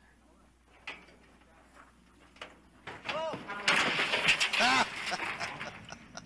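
A few faint clicks, then, from about three seconds in, voices calling out over a rush of outdoor noise that fades near the end.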